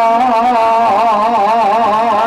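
A man's voice intoning a long, drawn-out melodic phrase with a strong wavering vibrato, over a steady low held tone.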